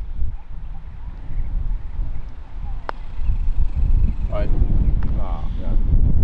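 Wind buffeting the microphone, growing stronger in the second half, with one sharp click about three seconds in: a putter striking a golf ball.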